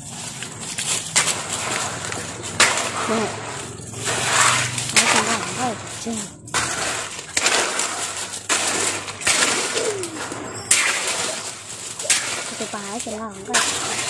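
A metal hoe scraping and chopping through a heap of wet cement mix on hard ground, in repeated rough strokes.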